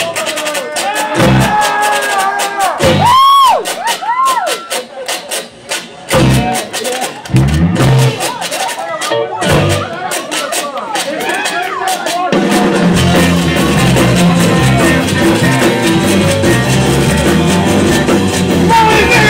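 Live blues-rock band in a breakdown: a washboard is scraped and tapped in a fast clicking rhythm over scattered low band hits and a few sliding pitched notes. The full band with drums and guitar comes back in about two-thirds of the way through.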